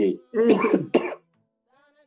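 A man's brief vocal sound lasting under a second, starting about a third of a second in, followed by a pause with only faint background music.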